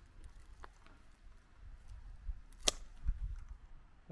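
Hand pruning snips closing through the thin broken tip of a young apple tree, one sharp snip about two and a half seconds in, with a fainter click of the blades before it. The cut takes off the ragged, broken end to leave a clean wound.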